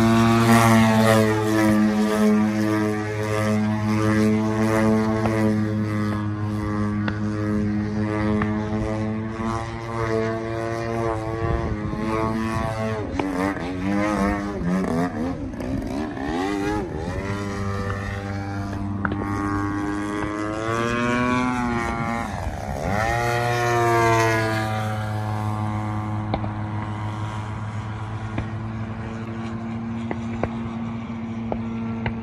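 Engine and propeller of an aerobatic radio-control airplane in flight: a steady engine tone whose pitch swings up and down twice, around the middle and again about three-quarters through, loudest just after the second swing, then steady again.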